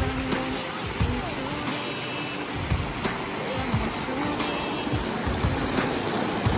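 A small creek rushing steadily over granite cascades, with scattered low thumps on the microphone.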